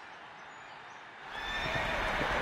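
A horse neighs, coming in loud about a second and a half in, with hoofbeats beneath it, after a faint steady hiss.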